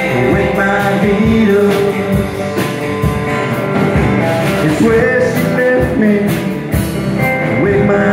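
Live band music: acoustic and electric guitars, electric bass and a drum kit playing together, with regular drum strokes.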